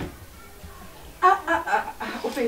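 A woman's voice speaking briefly, starting about a second in after a pause, over quiet background music.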